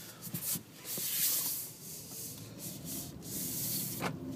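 Cabin noise of a 2012 Honda Ridgeline's 3.5-litre V6 pulling away at low speed: a low steady engine hum under a hiss of road and handling noise, which swells about a second in.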